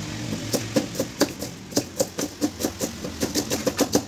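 Knife chopping cabbage on a steel plate: quick, even chops, about four a second, each with a light knock as the blade meets the metal. A low steady hum sits underneath.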